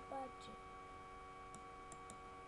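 Steady electrical hum made of several fixed tones, with a few faint, sharp clicks spread through it. A brief bit of voice sounds right at the start.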